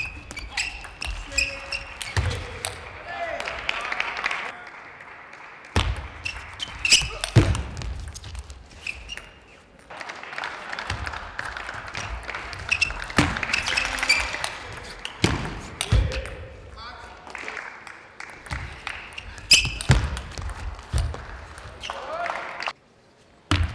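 Table tennis rallies: quick, sharp clicks of a celluloid ball striking rubber bats and the table, with crowd applause and voices in a large hall between points.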